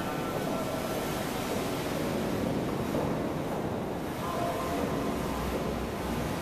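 Steady rumble of a boat's engine with the wash of water, heard from aboard a boat moving along a canal.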